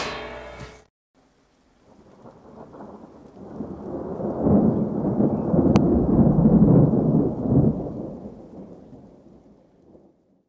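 A long rolling rumble of thunder that swells over a few seconds and then fades away. A brief pitched tone is heard at the very start and cuts off under a second in.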